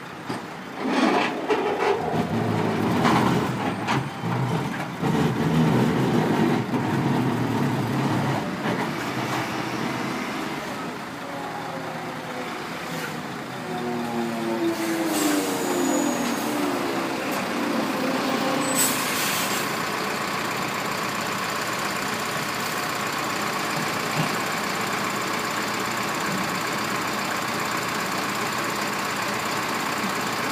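Truck's diesel engine running unevenly as it manoeuvres, its pitch gliding up and down in the middle. Then a short burst of air-brake hiss just before two-thirds of the way through, after which it settles into a steady idle.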